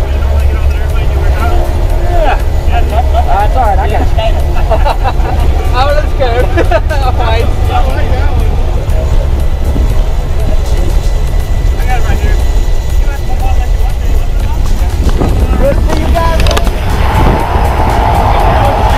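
Small propeller plane's engine running steadily, heard from inside the cabin with the door open, growing louder and harsher near the end. Muffled voices or singing sound over it.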